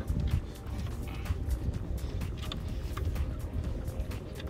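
Wind rumbling on the microphone, with many short clicks and faint music in the background.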